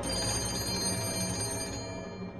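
A vintage desk telephone's bell ringing in one continuous ring, with background music underneath.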